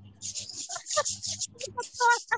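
A woman laughing in short, breathy pulses during a laughter-yoga exercise.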